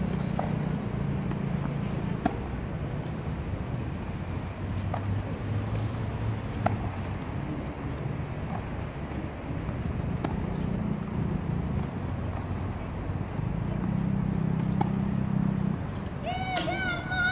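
Tennis balls struck by racquets in a baseline rally, a sharp pop about every two seconds, over a steady low background rumble.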